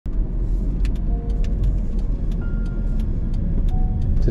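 Car driving, heard from inside the cabin: a steady low road and engine rumble.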